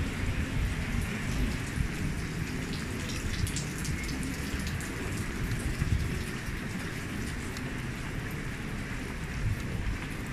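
Rain on a city street, a steady hiss, with low wind buffeting on the microphone.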